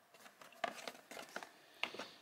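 Light taps and rustles of a blister-packed die-cast toy car on its cardboard card being handled and set down, with a sharper click near the end.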